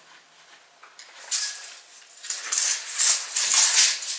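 Rustling and scraping of heavy canvas being handled on the floor while it is measured and marked, in several noisy bursts from about a second in.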